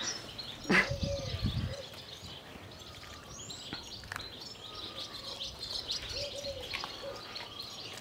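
Small birds chirping faintly, with soft dove-like cooing near the start and again near the end; a brief low rumble in the first two seconds.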